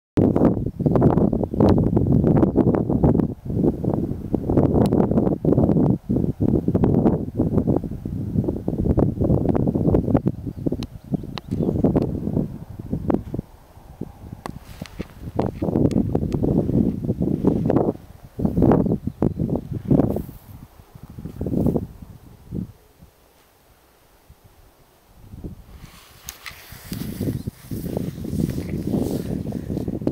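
Gusty wind buffeting the microphone in irregular low rumbles, dying away for a couple of seconds past the two-thirds mark, then returning with a hiss of rustling near the end.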